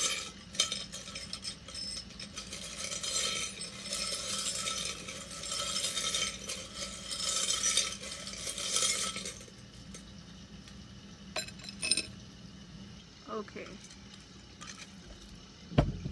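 Charms rattling and clinking together as they are shaken in a container, a dense clatter for about nine seconds. A few separate clinks follow, then a single dull thump near the end.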